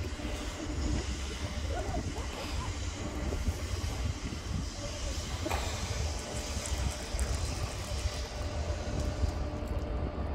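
Steady outdoor city background: a low rumble and even hiss, with a faint steady hum and faint, brief distant voices.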